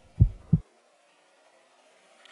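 A heartbeat sound effect: one pair of deep thumps about a third of a second apart, then it cuts off.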